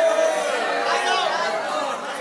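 Several voices of a congregation chattering and reacting in a large hall. A held, steady tone dies away about half a second in.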